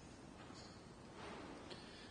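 Near silence: the quiet room tone of a church, with a few faint soft sounds.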